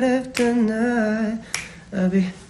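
A man singing long, drawn-out notes with a wavering pitch, keeping time with two sharp finger snaps, one about a third of a second in and one about a second and a half in.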